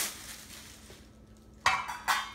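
Quiet room, then near the end a short, sharp handling clatter as a hand reaches into a cardboard box of wrapped cookware.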